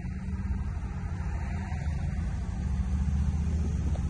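Engine of a 1957 Oldsmobile Super 88, its rebuilt 371 V8, running as the car pulls away from a stop. Heard from inside the cabin as a low, steady engine sound that grows gradually louder.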